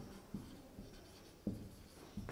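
Marker pen writing on a whiteboard: faint scratching strokes with a few soft taps as the letters are formed.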